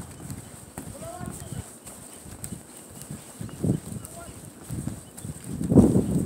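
Footsteps knocking on the wooden planks of a boardwalk while walking, an irregular run of dull low thumps, the loudest just before the end.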